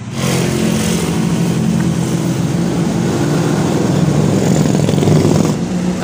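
A motor vehicle engine running close by with some revving, loud and steady, swelling near the end before easing off.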